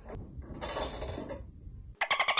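Metal scraping and rattling as a flat-screen TV is fitted onto its wall-mount bracket, strongest from about half a second to a second and a half in.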